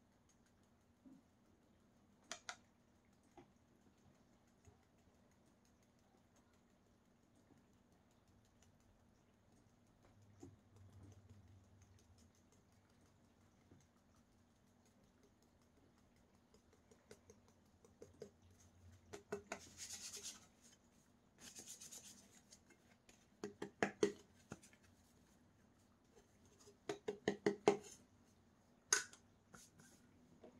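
Dyed test sand being sprinkled by hand from a small container onto carpet: faint rustling and light scratching, with a couple of sharp clicks early and busier clusters of scratches, clicks and short hisses in the last third.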